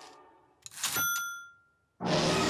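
Old manual typewriter: a few sharp keystroke clacks, then its bell dings once about a second in and rings out for about half a second.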